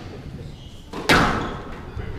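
A single sharp bang on the squash court about a second in, ringing on briefly through the hall, over low murmur.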